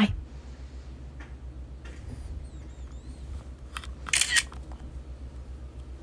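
Phone handling noise over a low steady hum: a few faint clicks and a short rustle about four seconds in.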